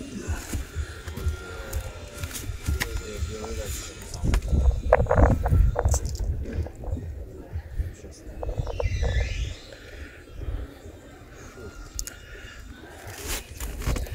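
A pencil scratches along a plastic window-abutment profile with mesh as its length is marked, over handling noise. A steady low rumble of wind on the microphone runs underneath.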